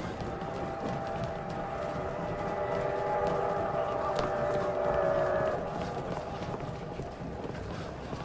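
A train whistle holds a steady chord of several tones for about five seconds, swelling before it stops, over the bustle and footsteps of a crowd on a station platform.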